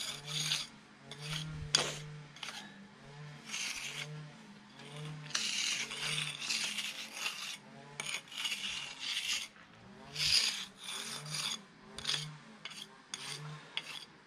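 A half-round pointing bar scraping along sand-and-cement mortar joints between patio slabs in repeated short strokes. The joints are being tooled once the mortar has partly set, just dry enough not to smear onto the slabs.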